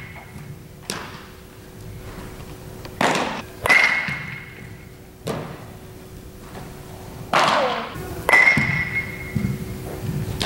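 Baseballs being hit with a bat during fielding practice: two ringing cracks about four seconds apart, among several duller thuds of balls meeting gloves. The sounds echo in a large indoor hall.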